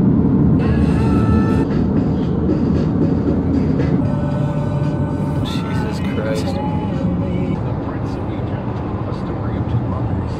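Steady road and engine rumble inside a moving car's cabin, with music and a singing voice over it.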